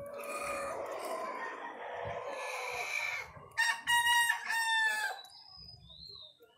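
Roosters crowing: a long, rough crow over the first three seconds, then a louder cock-a-doodle-doo in three parts from about three and a half to five seconds in.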